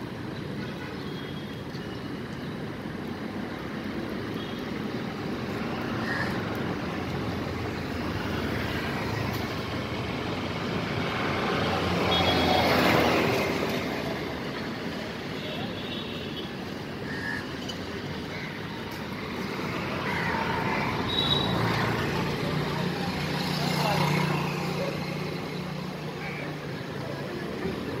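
Street traffic noise with motor vehicles passing, the loudest pass swelling and fading about halfway through.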